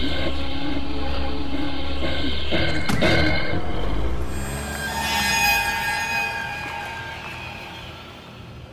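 Eerie horror film score: a steady low rumble with a sharp hit about three seconds in, then high ringing tones that swell and slowly fade away.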